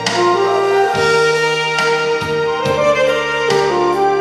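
Saxophone playing a Korean trot melody in long held notes, stepping between pitches, over a backing track with keyboard and a steady drum beat.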